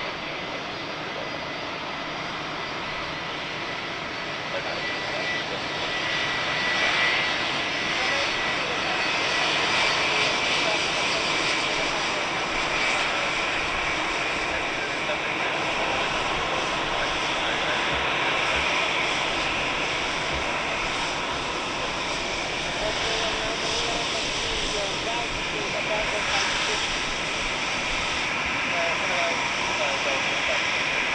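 Boeing 757 airliner's jet engines after landing: a steady rush of jet noise with a faint whine, growing louder about six seconds in and holding as the plane rolls out along the runway and taxis.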